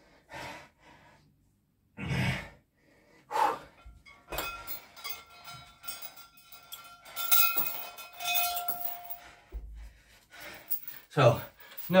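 Heavy breathing after a hard set of weighted chin-ups. Then the chain of a dip belt jangles and a weight plate clinks and rings as it is unhooked, with a low thud near the end.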